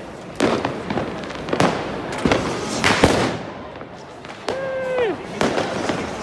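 New Year's Eve fireworks and firecrackers going off around a crowd: a string of sharp bangs, about eight in six seconds, over crowd chatter. Between the bangs, a little before the end, one long held shout drops in pitch as it ends.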